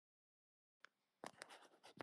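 Near silence, with a few faint clicks in the last second as a speaker on the voice-chat line gets ready to talk again.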